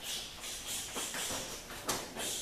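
Bodies scuffling and rolling on a padded training mat, with clothing rustling and one sharp knock just before the end.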